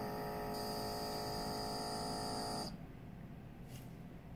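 Genève Air Care A1 fragrance dispenser spraying: a steady hum from its small pump together with a hiss of mist. It cuts off suddenly about two and a half seconds in.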